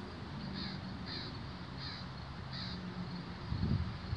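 A bird outside giving four short, faint calls, about two-thirds of a second apart, over a low steady background; a brief low thump near the end.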